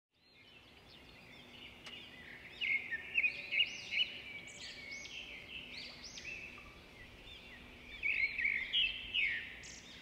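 Small songbirds chirping and singing: many quick, repeated high chirps overlapping one another, with louder spells about three seconds in and again near the end.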